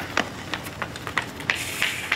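Quick footsteps on a concrete driveway, a run of short, sharp taps about three a second, with a brief hiss a little before the end.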